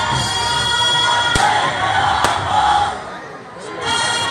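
A crowd cheering and shouting together, with two sharp cracks about a second and a half and two seconds in. The voices dip briefly near the end.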